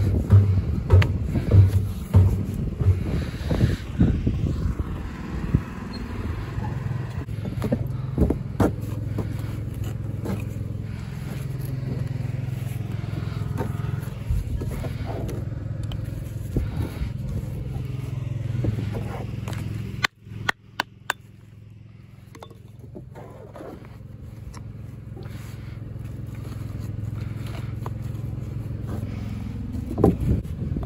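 Cotswold stones being handled and set into mortar: irregular knocks of stone on stone and scrapes, over a steady low mechanical hum. About two-thirds of the way through, the hum drops out abruptly and then slowly builds back.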